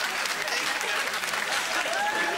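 Studio audience applauding and laughing: a dense patter of many hands clapping.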